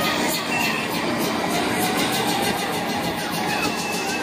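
Steady carnival midway din: ride machinery running, with music and voices mixed in.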